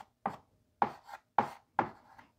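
Chalk writing on a blackboard: five sharp taps and strokes of the chalk, about half a second apart.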